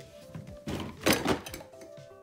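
Background music with steady held notes, and a little after half a second in a short burst of rustling handling noise ending in a thunk, as the stack of cards and the box are moved on the table.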